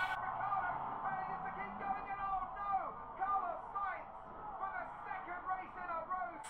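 A voice in muffled, thin-sounding audio with nothing above the middle of the range, steady at a moderate level throughout.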